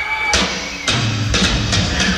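Hard rock band playing live as a song starts: four sharp drum and cymbal hits with bass and electric guitar coming in under them, after a held high note fades out.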